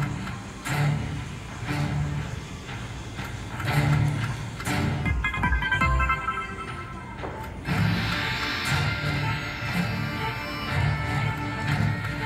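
Slot machine bonus music with a steady beat, from a WMS King and the Sword machine running its free spins as the reels spin and stop.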